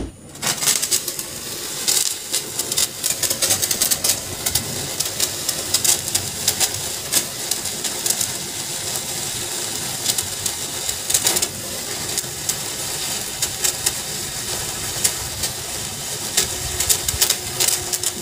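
Metal Beyblade top spinning on a large plastic dish, a steady whirring scrape broken by frequent rattling clicks as it skids and knocks across the surface.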